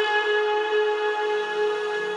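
Progressive house DJ mix in a beatless breakdown: a held synth note with its overtones and no drums. A lower pad chord comes in about a second in.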